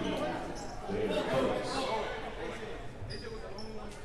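Gymnasium sound during a stoppage in a basketball game: indistinct voices of players and spectators, a basketball bouncing on the hardwood floor, and a couple of short high sneaker squeaks near the end.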